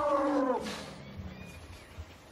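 An Asian elephant trumpeting: one long call that falls slightly in pitch and ends about half a second in.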